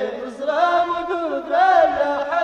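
Singing from a 1970s Moroccan Amazigh (Tamazight) modern folk song: a sung melody that bends and glides in pitch, with no drum strokes under it in this stretch.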